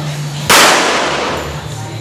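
A single pistol shot about half a second in, loud and sharp, its report dying away over about a second.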